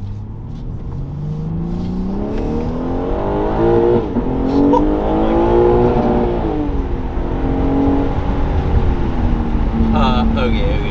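BMW G80 M3's twin-turbo S58 inline-six, fitted with an aftermarket midpipe, heard from inside the cabin under hard acceleration. The engine note climbs for about four seconds, dips briefly at a gear change, then holds and eases off to a steady cruise.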